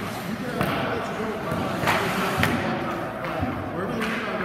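Indistinct voices echoing around an indoor ice rink, with a few sharp knocks of hockey gear, the clearest about two seconds in.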